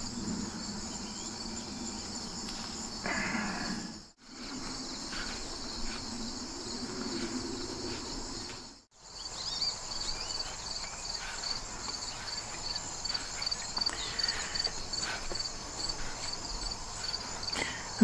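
Late-summer chorus of crickets: a steady, high-pitched trill. From about nine seconds in, a regular chirp pulses about three times a second. The sound cuts out briefly twice.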